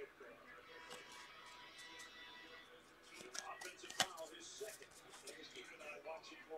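Faint handling of a football trading-card pack and its cards: light rustling, then a run of small clicks, with one sharp click about four seconds in.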